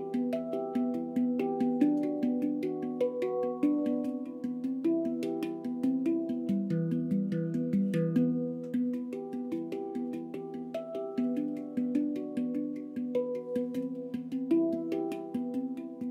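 Symphonic Steel handpan played with the fingertips in a fast, unbroken stream of light strikes. Its tuned steel notes ring on and overlap into a continuous bell-like wash.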